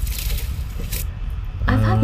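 Live snakehead fish being tipped out of a net with water onto a woven mat: wet splashing and scraping that cuts off after about a second. A man's voice follows near the end.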